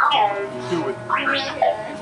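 A Star Wars astromech droid beeping and warbling in quick whistles that glide up and down, over the ride's background music.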